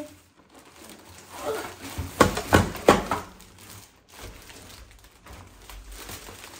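Plastic shopping bag rustling and a cluster of three or four knocks a little past two seconds in, as groceries are taken out of the bag and put into a kitchen cabinet.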